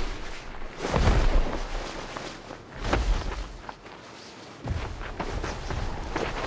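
Deep booming thuds of an airbag-cushioned lander hitting the ground as it bounces: two big impacts about two seconds apart, then, after a lull, a low rumble starting up again near the end as it rolls and hits again.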